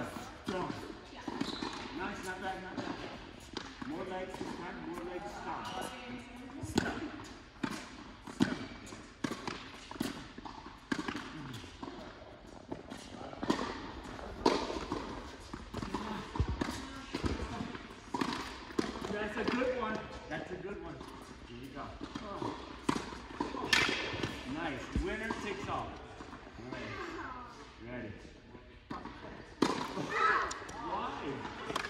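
Tennis balls struck by rackets and bouncing on a hard court, irregular sharp hits in a large indoor hall, with voices talking throughout.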